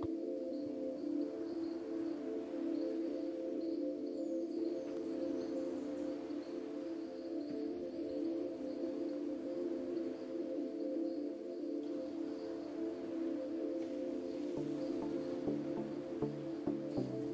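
Background music: ambient music with steady held chords, and a lower stepping bass line coming in near the end.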